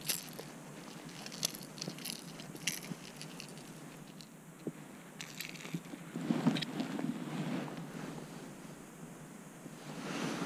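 Hands unhooking a lure from a small pike: scattered light clicks and ticks of the lure and hooks, with a louder stretch of rustling about six seconds in.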